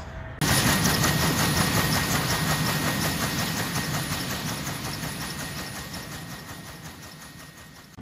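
Kaman K-MAX K-1200 helicopter running on the ground with its intermeshing twin rotors turning: a steady rotor and turbine noise with a thin, steady whine, fading out gradually.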